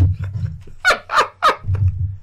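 Men laughing in a string of short, pitched bursts, the strongest three coming in quick succession around the middle.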